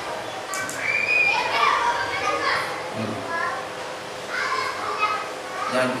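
Children's voices chattering and calling out.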